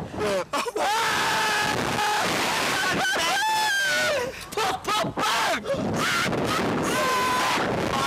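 Two men screaming and yelling while riding a slingshot (reverse-bungee) ride, in long, held, wavering cries. Wind rushes steadily over the on-board microphone behind them.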